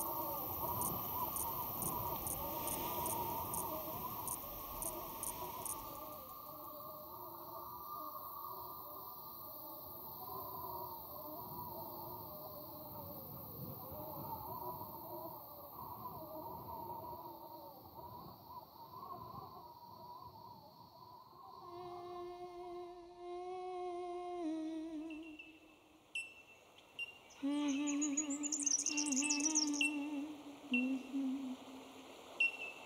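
Crickets chirping about two or three times a second for the first six seconds over a low, wavering hum, which carries on alone until about twenty seconds in. Then come held musical notes that step in pitch, and near the end high chirping, likely birds, over a low sustained note.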